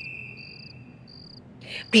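Cricket chirping in short, evenly pitched high bursts, twice, while a high whistle tone fades out in the first second. A voice cuts in near the end.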